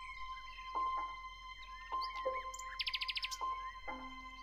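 Gentle piano music with sustained notes, a new note struck about once a second, mixed with small birds chirping and a fast trill about three seconds in.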